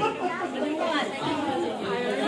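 Several people talking over one another in lively group chatter, with a laugh at the start.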